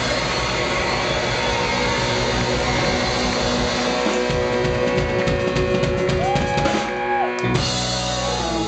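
Live punk rock band playing with distorted electric guitar, bass and drums, with a run of rapid drum hits in the middle. About seven seconds in the band drops out for a moment, then comes back in loudly.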